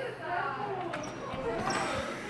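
Faint voices talking in the background over low room noise, with a light knock about halfway through.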